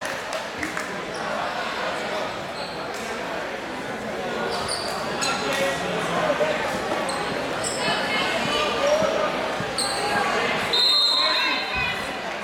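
Crowd of spectators chattering in a large, echoing school gym, with scattered thumps and short high squeaks. A brief, louder high tone comes about a second before the end.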